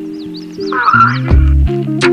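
Live band music played through a PA: sustained guitar chords, then loud deep bass notes with a kick about halfway through. About a second in, a short cluster of high chirping sounds rises over the music.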